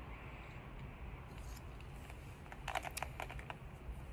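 Faint sounds of a briar tobacco pipe being relit with a lighter: soft draws and hiss at first, then a quick run of light clicks about three seconds in.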